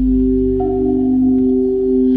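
Crystal singing bowls ringing in long, overlapping steady tones, with a higher tone joining about half a second in, over a low steady keyboard drone.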